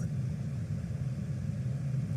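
Car engine idling inside the cabin: a steady low hum with no change.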